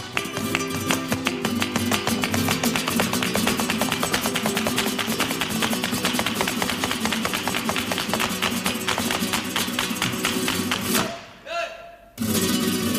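Flamenco zapateado: heeled dance shoes striking a hard floor in rapid, dense strokes over flamenco guitar. It breaks off into a brief lull about a second before the end.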